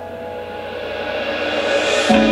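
Live band's song intro: held keyboard notes under a rising swell that builds steadily louder and brighter toward the end, leading into the full band's entry.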